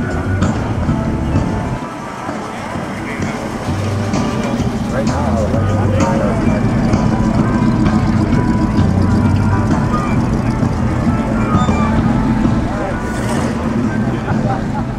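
Vintage prewar cars, Cadillac V-16s among them, rolling slowly past at walking pace with a low, steady engine hum, over the chatter of a crowd.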